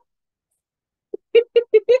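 A woman laughing, a quick run of about five short "ha" bursts that starts a little past a second in.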